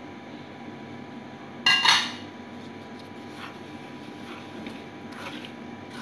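Semolina being stirred in a metal cooking pan. A utensil clatters once against the pan with a short metallic ring about two seconds in, with a few faint scrapes and taps later.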